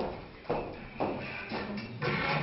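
Footsteps on a wooden stage floor, about two a second, each knock ringing briefly in the hall.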